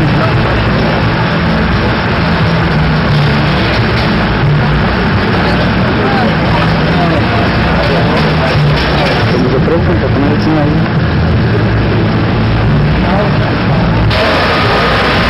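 A racing car's engine running in the pits, with voices around it.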